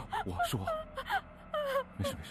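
A woman sobbing and whimpering in distress, her crying voice wavering up and down, with sharp gasping breaths between the sobs.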